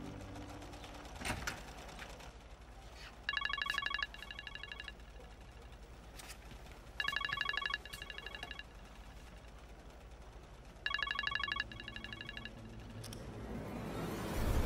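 Mobile phone ringing with an incoming call: a trilling electronic ringtone sounding three times, a few seconds apart, each ring a louder trill followed by a softer one.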